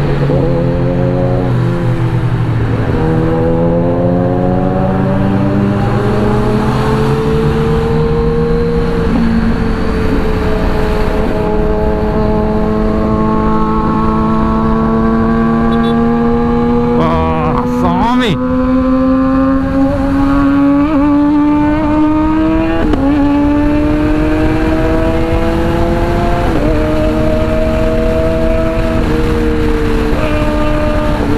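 Sport motorcycle engine pulling through the gears at highway speed. Its pitch climbs steadily and drops back at each upshift, again and again. Just past halfway there is a short burst of sharp cracks.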